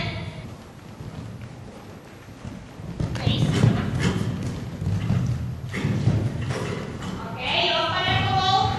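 A horse's hoofbeats cantering on the deep sand footing of an indoor arena: a run of dull thuds about a second apart, starting about three seconds in.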